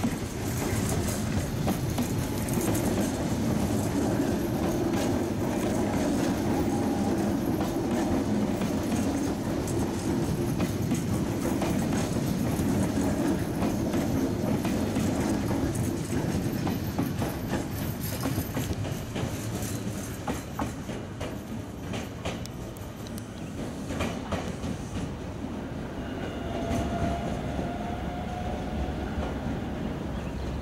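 Nankai Rapi:t electric train passing close by, wheels clacking over rail joints with a steady rumble. The sound eases off after about twenty seconds as the train moves away, and a faint rising whine comes in near the end.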